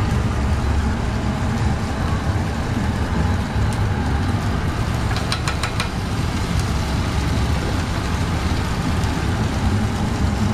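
Steady low, engine-like rumble of food truck machinery running, with a brief run of light clicks about five seconds in.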